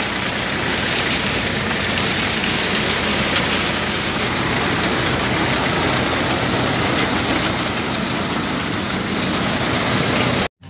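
Old-model groundnut thresher running under load, powered by a Farmtrac 45 hp tractor: a loud, steady mechanical clatter and rush as pods and vines pass through the drum and sieves, with the tractor engine's low, even drone underneath.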